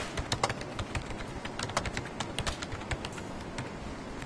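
Fingers typing on a computer keyboard: irregular, quick key clicks, several a second.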